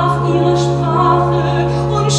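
Musical-theatre singing: a woman's voice holding sung notes over accompaniment with a steady held low note underneath.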